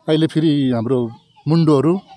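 A man's voice speaking in two short phrases, with a brief pause between them.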